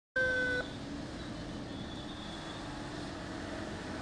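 A short, loud, steady horn-like tone right at the start, then the steady noise of vehicles driving past: a police escort pickup and a military truck in a convoy.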